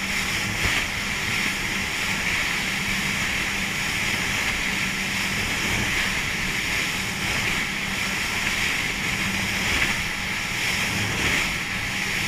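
Motorboat running at speed through chop: a steady rush of water and spray along the hull, with wind on the microphone, over a steady low engine drone.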